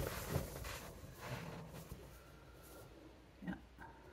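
Cotton quilt top rustling as it is handled and turned over, in irregular bursts that fade out after the first second or two.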